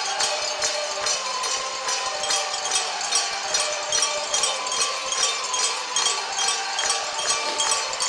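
Arena crowd noise with a cowbell rung rapidly and steadily, several strokes a second, in celebration of a goal.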